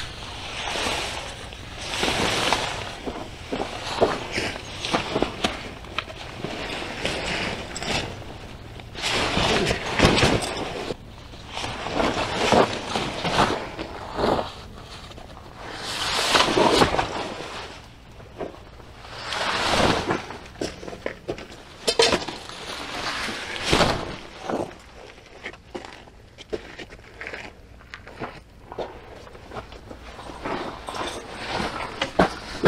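Nylon fabric of a Clam Voyager pop-up screen shelter rustling and flapping in irregular bursts as the collapsed shelter is pulled open and its panels are pushed out, with a few sharp knocks from the frame and footsteps on gravel.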